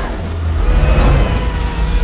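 Film sound effects of a crashing four-engine plane: a loud, deep rumbling roar with a steady whining tone over it.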